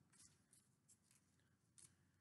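Near silence, with a few very faint rustles of comic books in plastic sleeves being handled.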